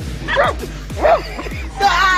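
A German Shepherd-type dog barking three times, about a second apart, at an electric eel on the ground. Background music with a steady low beat plays underneath.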